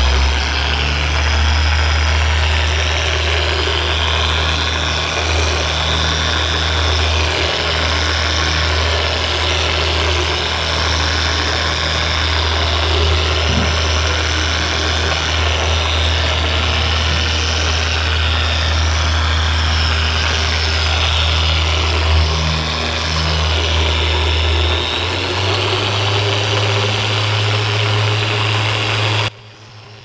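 Makita rotary polisher running a compounding pad over car paint for paint-correction compounding: a steady motor hum whose pitch steps up late on, then cuts off suddenly near the end.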